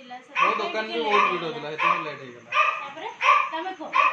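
A dog barking repeatedly, about six barks evenly spaced, with people's voices underneath.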